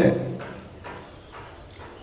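A few faint, irregular knocks in a quiet pause, after a man's voice trails off.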